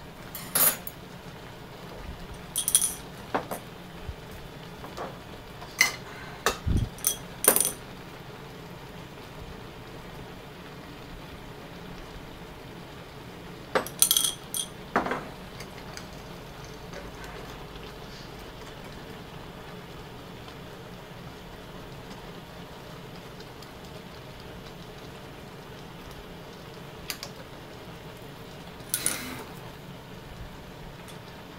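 Steady hiss of a gas burner heating a pot of pasta in water, broken by sharp metallic clinks and knocks of kitchenware: a cluster in the first eight seconds, a couple about halfway, and one more near the end.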